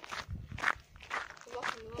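Footsteps on gravel, several steps in a row at a steady walking pace.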